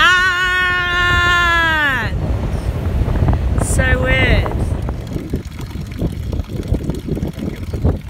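Strong wind buffeting the microphone with a steady low rumble. Over it, a person's voice holds one long high note for about two seconds, dropping in pitch as it ends, and gives a shorter call about four seconds in.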